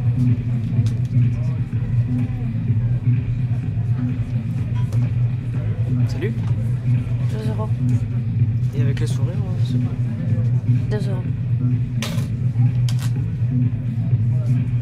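Muffled nightclub dance music, heard mostly as a heavy bass line with a steady beat, under a murmur of crowd voices. A few sharp clinks of metal coat hangers come in the second half.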